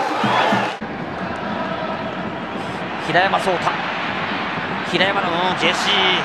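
Steady stadium crowd noise from a televised football match, with two short bursts of a commentator's voice around the middle and near the end. The sound changes abruptly just under a second in, where one broadcast clip is cut into the next.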